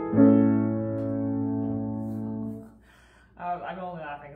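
Grand piano: a chord struck and held for about two and a half seconds, then released and damped off suddenly, closing the hymn. A brief sound of a woman's voice follows near the end.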